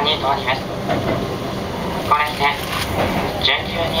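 Keihan train running into a station at slowing speed, its rumbling running noise heard from the cab, with the conductor's onboard announcement starting over it.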